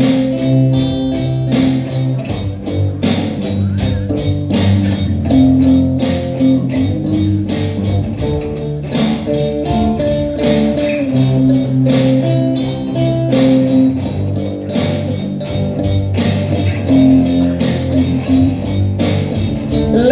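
Live rock band playing an instrumental passage: electric guitars and bass guitar over a steady drum beat.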